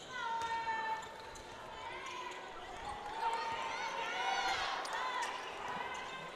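Basketball court sounds: a ball being dribbled on a hardwood floor and shoes squeaking, with one long squeak in the first second and more squeaks later, against the hum of voices in a gym.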